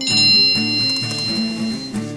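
A single bright bell-like chime, a text-message alert on an iPhone, rings out at the start and fades over about two seconds, over background music with acoustic guitar.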